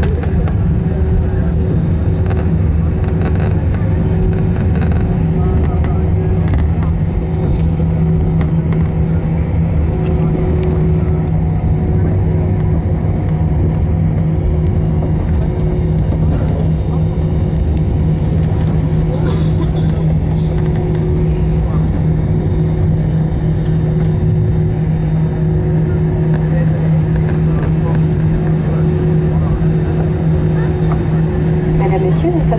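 Airbus A320 cabin noise: the engines and airflow give a steady, even drone with a constant low hum and a fainter higher tone above it.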